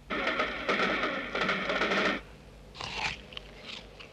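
Electronic sound effects: a harsh hissing noise with faint steady tones inside it runs for about two seconds and then stops, followed by a few short noisy bursts and clicks.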